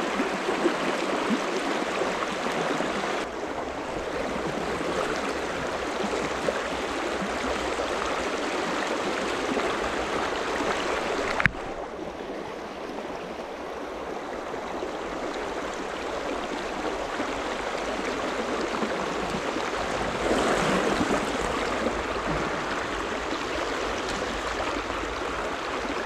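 Shallow stream running over a rocky riffle: a steady rush of water, with a single sharp click about halfway through.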